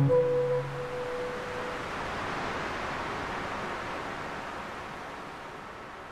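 The final acoustic guitar chord rings out and fades over the first second or two. A soft rushing wash of ocean surf then swells and slowly dies away.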